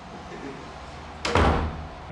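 A wooden front door shut with a single heavy thud about a second in, dying away quickly.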